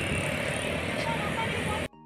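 Steady outdoor background noise with faint voices mixed in. It cuts off abruptly just before the end, where soft music begins.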